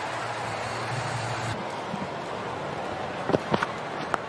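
Stadium crowd noise, a steady hubbub of many voices that drops slightly about one and a half seconds in. A couple of sharp knocks come near the end.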